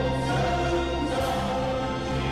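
A choir singing with instrumental accompaniment, the voices holding long notes.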